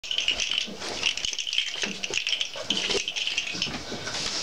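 Busy light rattling and rustling of things being handled, a quick run of small clicks and crackles with no pause.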